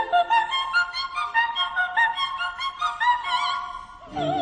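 Classical background music: a quick run of short, high, clear notes.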